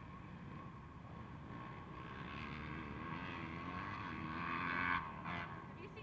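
Off-road motorcycle engines running on a motocross track, one engine's sound building over a few seconds to a louder peak and then dropping off sharply about five seconds in.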